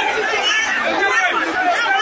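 A crowd of people talking over one another, many voices mixed together with no single speaker standing out.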